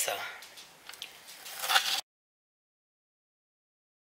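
A woman's voice finishing a word, a few faint clicks, and a short vocal sound, after which the audio cuts off abruptly to dead silence about halfway through.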